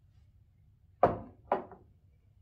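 Two sharp knocks about half a second apart, the first the louder, each ringing out briefly.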